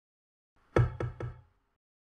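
Three quick knocks, like knuckles on a door, a little under a second in, each with a short low ring after it.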